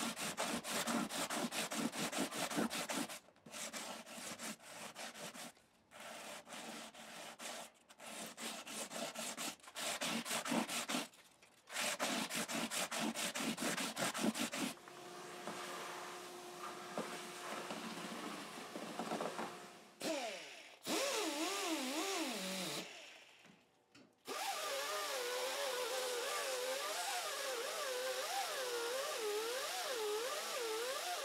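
Fret file rubbing across the frets of a classical guitar in repeated strokes with short pauses, as the frets are recrowned, for about the first fifteen seconds. Later a small rotary tool with a polishing wheel runs against the frets, its pitch wavering under load.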